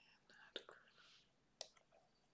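Faint whispering in a near-silent room, with three sharp computer mouse clicks, the loudest about a second and a half in.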